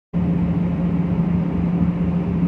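Steady low drone of a RORO ferry's machinery, with a strong, even hum.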